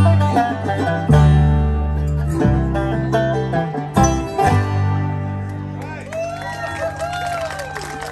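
Acoustic bluegrass band of banjo, mandolin, acoustic guitar and upright bass playing the closing phrase of a song. A few accented chord hits come in the first half, then a last chord rings out and slowly fades over the second half.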